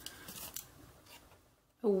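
Scissors cutting through folded origami paper, trimming a wedge off its edge: a faint snipping and scraping in about the first second.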